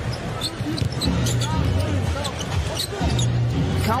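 Live game sound from the court: a basketball being dribbled on the hardwood, short sharp bounces, over arena music and crowd background.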